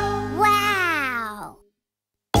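The end of a children's cartoon theme song: a held final chord with a voice-like tone that slides up briefly and then glides down for about a second. The music then cuts off, leaving silence near the end.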